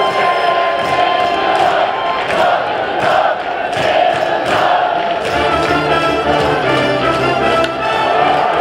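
A cheering section's brass band, sousaphones included, plays a fight song to a steady beat while the crowd shouts along. Low brass notes are held from about five seconds in.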